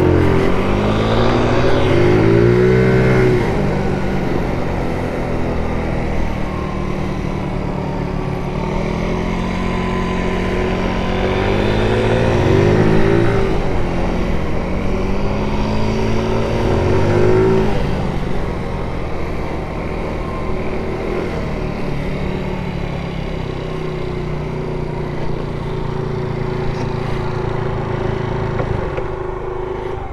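Small GY6 four-stroke scooter engine running under way, its pitch rising and falling several times as the scooter accelerates and slows. It settles to a steady note in the last few seconds.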